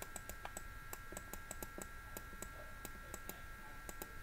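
Faint computer mouse button clicks, irregular and several a second, over a faint steady high-pitched whine.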